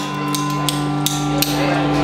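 A live song ending on a held chord that sounds steadily, with a few sharp percussive hits over it.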